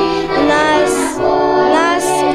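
Children singing with instrumental accompaniment.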